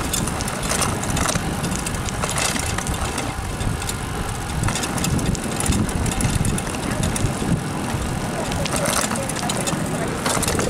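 Steady noise of riding a bicycle on a paved trail: wind on the microphone and tyre rumble, with scattered small clicks and rattles.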